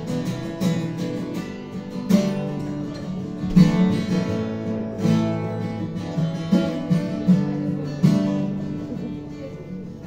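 Acoustic guitar playing a song intro: chords strummed every second or so and left to ring.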